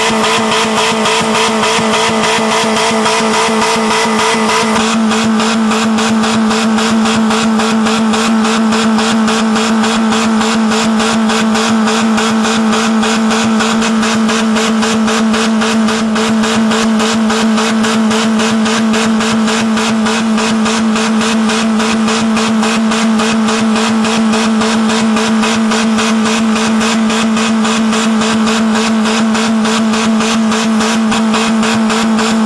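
A small Geo car's engine running flat out at a steady, unchanging high pitch, held at full throttle with no load in an attempt to blow it up. The tone shifts slightly about five seconds in.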